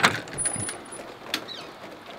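Front door being opened: a latch click, a brief high squeak, then another click about a second and a half in.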